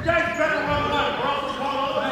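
A basketball bouncing on a hardwood gym floor, heard under voices in the hall.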